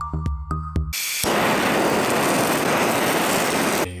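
Handheld butane blowtorch flame running with a steady hiss. It starts about a second in, after a brief stretch of background music, and cuts off just before the end.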